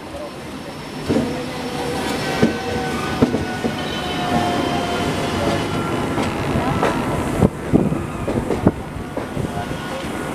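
Running noise of an express train's coaches heard from an open carriage door: a steady rumble of wheels on the rails that builds over the first second, with sharp clacks as the wheels cross rail joints and points, and a thin metallic whine from the wheels in the middle of the run.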